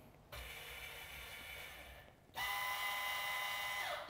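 Electric adjustment motor of a bike-fitting rig running as the saddle height is set. It runs in two stretches: a quieter steady hum for nearly two seconds, a brief stop, then a louder, higher steady whine for about a second and a half.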